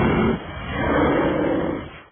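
Bear roaring: one rough, drawn-out roar that swells about half a second in and fades just before the end.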